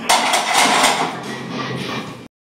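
Loaded Olympic barbell being racked on a steel bench-press rack: metal clanks and plate rattles as the bar hits the hooks, starting suddenly just after the start and dying away.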